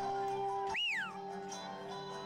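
Music with sustained tones. About a second in, a brief high sound swoops up and then falls in pitch while the music's low end drops out for a moment.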